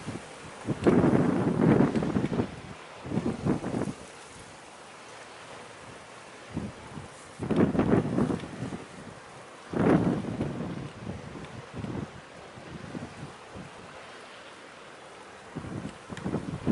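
Wind buffeting the microphone in irregular gusts, about four of them, over a steady low hiss of wind and sea.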